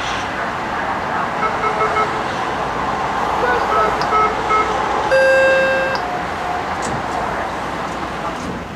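Steady rumble and hiss of a BART train car running on the track, heard from inside the car. Two runs of short beeps come over it, then a louder held tone lasting about a second, about five seconds in.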